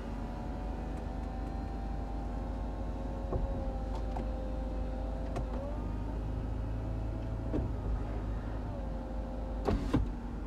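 The electric folding hard-top roof of a 2012 Mercedes-Benz SLK200 opening while its switch is held: a steady motor whine that dips in pitch twice, over a low steady hum. There are a few sharp clicks near the end.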